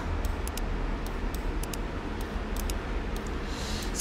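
Steady background hiss and low hum with no speech, with faint, irregular high-pitched ticks several times a second.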